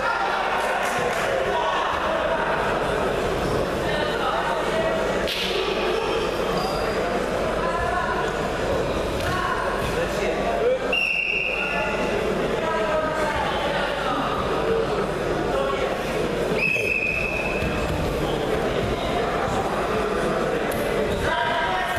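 Wrestling bout in a large echoing sports hall: spectators' voices and shouting mixed with thuds of bodies and feet on the mat. Two short, high whistle blasts sound, one about halfway through and one a few seconds later.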